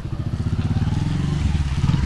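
Motorcycle engine running at low speed as the bike rides past close by, its even low pulsing growing steadily louder.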